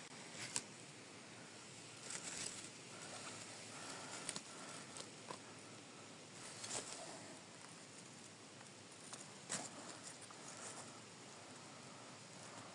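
Faint rustling of dry fallen leaves and forest litter being handled, with a few short sharp clicks scattered through it.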